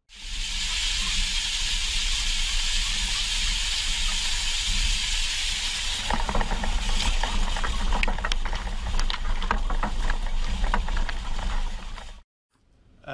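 Ultrahigh-pressure water jet cutting nozzle hissing loudly over the low rumble of the moving seeder. About halfway through the hiss fades and a run of crackles and snaps takes over as damp straw stubble is cut and pushed through by the seeding disc.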